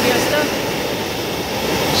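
A hot-air balloon's propane burner firing: a loud, steady roar.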